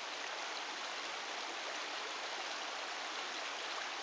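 A shallow creek flowing, a steady, even rush of running water.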